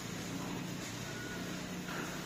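Faint steady background hum and hiss, with no distinct cuts or knocks standing out.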